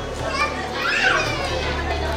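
Children's voices in a crowded hall, many talking and calling out at once, with one high child's voice rising and falling about halfway through.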